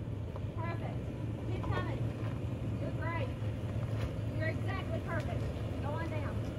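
Lexus GX460's V8 engine running with a steady low rumble as the SUV crawls slowly over rock, with brief snatches of voices heard every second or so.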